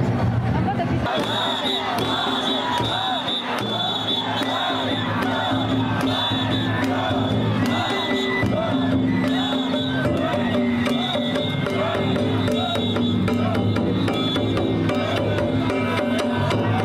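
Danjiri float festival music: drums and gongs struck in a rapid rhythm, with the pulling team shouting as the float is hauled past. A high piping tone comes in about a second in and sounds on and off.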